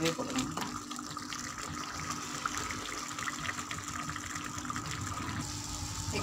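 Water being poured in a steady stream into simmering masala gravy in a pan, to thin the gravy to the wanted thickness.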